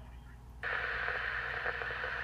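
A Uniden BCD536HP scanner's speaker suddenly opens about half a second in with a harsh, noisy received signal, loud and steady, as the search stops on a hit in the UHF Federal band.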